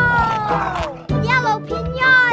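Children's cartoon background music under a high, falling, wordless vocal sound from an animated character, followed about a second later by a short wavering one.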